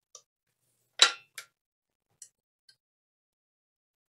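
A few light clicks and clinks from bench power supply test leads and their clips being handled: a sharp click about a second in, a smaller one just after, then a couple of faint ticks.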